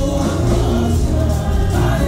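Gospel worship music: a group of voices singing together with a heavy bass accompaniment, loud and steady.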